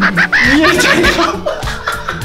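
A man laughing loudly, his voice rising high in pitch, with a few spoken words, over background music with a steady beat.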